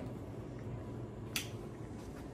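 A single sharp click about one and a half seconds in, over a low steady room hum: a button at the bedside being pressed to start the headboard's fireworks light-and-music show.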